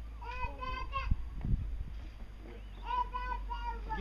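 A high-pitched voice in two long, drawn-out phrases, the first early and the second near the end, over a steady low rumble, with a few dull thuds in between.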